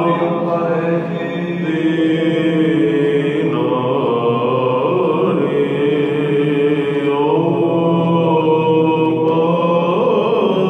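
A male Byzantine cantor chanting a Greek Orthodox doxastikon: a solo voice holding long notes that move slowly up and down in pitch, without a break.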